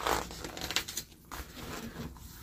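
A picture-book page being turned by hand: a quick swish of paper right at the start, then a few softer rustles as the page settles and is pressed flat.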